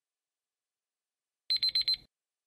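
Countdown timer's alarm sound effect as it runs out: four quick, high-pitched electronic beeps about a second and a half in.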